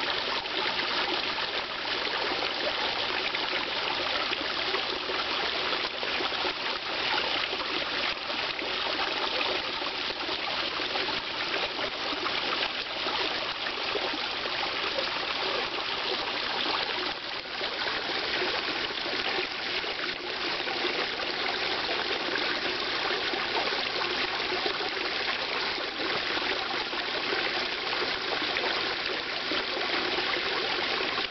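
Steady trickling and running of water into a koi pond, unbroken throughout.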